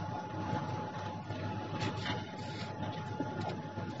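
Faint background noise with a thin, steady high-pitched whine that fades out shortly before the end.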